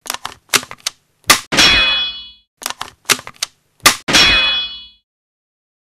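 Logo sting sound effect: a few quick metallic clicks, then two hard hits, the second ringing out like struck metal for about a second. The whole sequence plays twice, identically.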